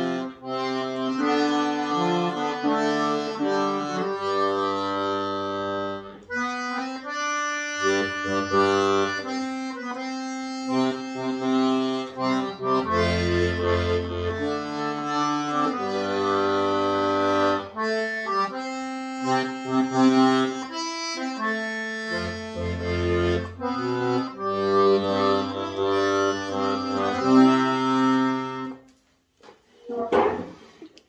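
Universal 80-bass piano accordion playing a slow hymn verse in sustained chords, keyboard melody over bass-button notes, without the alto part. The playing stops about a second before the end.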